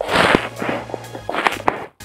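Handling noise from a plastic tub and an aerosol spray can held close to the microphone: two loud bursts of rustling and knocking, at the start and again about a second and a half in, over faint background music.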